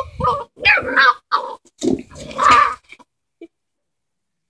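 Six-week-old Dalmatian puppies yelping and whining: about four short, high, wavering cries over the first three seconds.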